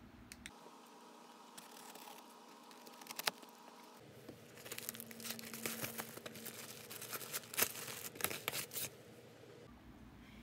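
A taped cardboard package being torn open by hand, with tearing and crinkling of its tape and wrapping, most of it in the second half. A single click about three seconds in.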